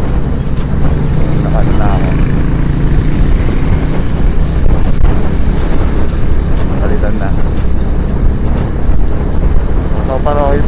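Wind rushing over a helmet-mounted action camera's microphone while riding a 2009 KYMCO Super 8 125cc scooter in traffic, with the scooter's engine running steadily underneath.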